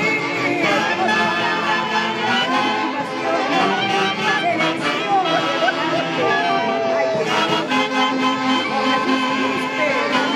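Live Andean folk orchestra with saxophones playing dance music for a tunantada, steady and loud, with crowd voices underneath.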